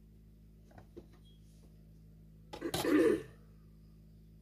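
A person clearing their throat with a short cough, choppy at first and then voiced, about two and a half seconds in, the loudest thing here. Two faint clicks come a little before it.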